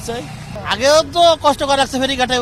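A man speaking, over a low background of road traffic.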